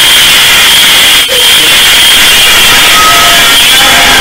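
Very loud, harsh hiss-like noise, like blown-out static, with faint thin whistling tones in it and a brief drop about a second in.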